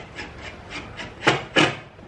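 Corduroy cushion cover handled and rubbed as the foam cushion is turned over: two short brushing sounds about a second and a half in, over faint shuffling of fabric.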